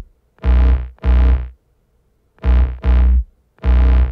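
Future bass supersaw synth playing root notes in a choppy, syncopated rhythm: short stabs, mostly in pairs, each with a heavy low end, cut off by brief silences.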